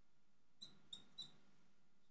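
Three short, high squeaks from a marker writing on a glass lightboard, about a third of a second apart, over near silence.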